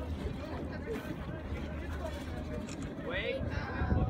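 Wind rumbling on the microphone, with onlookers' voices in the background and a voice rising briefly about three seconds in.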